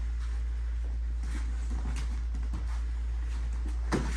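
Two people sparring on foam mats: light shuffling steps and faint knocks, then one sharp thud just before the end as a kick lands. A steady low hum runs underneath.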